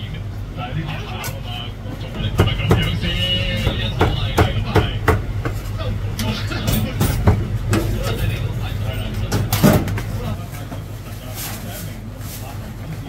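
Cleaver chopping marinated goose on a thick wooden chopping block: a series of irregular sharp knocks, the heaviest near the end, over background voices and a steady low hum.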